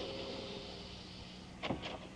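Soft, airy rushing noise that fades away over about a second and a half, over the faint steady hum of an old radio recording, with a short sharp sound near the end.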